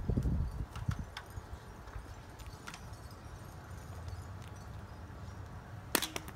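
A few light knocks and creaks as a person climbs a fiberglass stepladder barefoot, over a low rumble of wind on the microphone that is strongest in the first half second.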